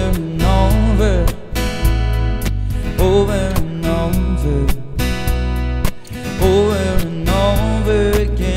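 Acoustic guitar strummed in a steady rhythm, with a voice singing a melody over it.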